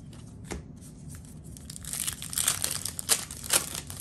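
A baseball card pack's wrapper being torn open and crinkling, a rough crackle for about two seconds in the second half with a few sharp rips.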